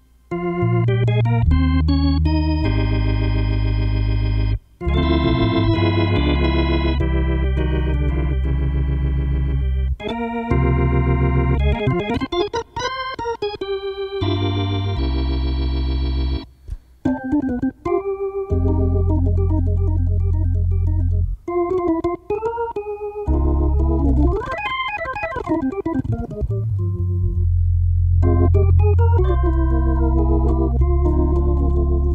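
Hammond B3 organ played solo: sustained chords on the manuals over held bass notes on the pedals, with short breaks between phrases about five, ten and seventeen seconds in.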